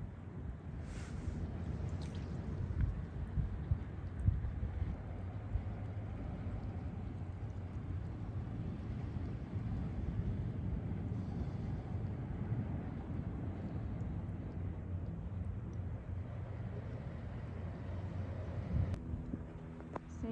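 Wind rumbling steadily on the phone's microphone, a low noise with no clear events in it.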